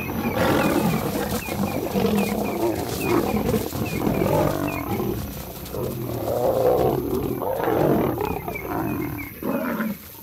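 Lions snarling and roaring without a break in an aggressive fight, lionesses facing off against a male lion.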